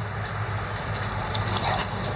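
Two small dogs playing and scuffling on grass: short, quick sounds of their movement over a steady low hum.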